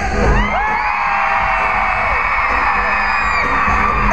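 Arena audience screaming and cheering: several high voices whoop, rise and hold their screams over a crowd roar.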